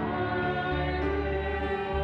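Church choir singing a hymn to instrumental accompaniment, held chords over a sustained bass line.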